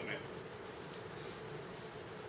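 Faint steady room hum with no speech.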